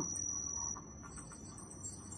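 A steady, thin, high-pitched tone like a faint scream, coming from the ThinkPad laptop's speakers. It is an audio glitch while the overloaded Windows PC, with CPU and disk near 100%, hangs during video editing; muting the laptop makes it stop.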